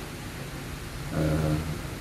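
A pause in a man's speech with faint room noise, then about a second in a short held vocal sound at a steady pitch, like a hesitant 'ehh', lasting about half a second.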